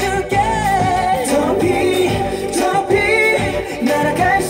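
A Korean-language pop song playing: a sung vocal line over instrumental backing.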